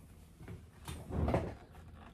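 Handling noise from a Fender Stratocaster being turned and moved close to the camera: a faint knock about half a second in, then a louder rub and bump just past the middle.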